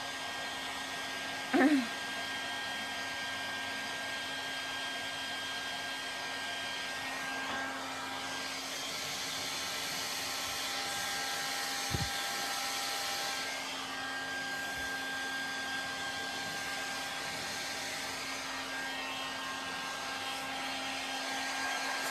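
Handheld electric hair dryer running steadily: an even rush of air over a constant motor whine, the air noise growing brighter for a few seconds around the middle as the dryer comes nearer. A brief louder sound about a second and a half in, and a small click about halfway through.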